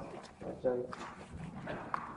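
Short, indistinct voice sounds, no clear words, with a light click near the end.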